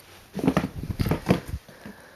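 Handling noise from a pair of riding shoes and their cardboard shoebox: a quick, irregular run of knocks and rustles, from about half a second in to a second and a half in, as the shoes are lifted and set down on the box.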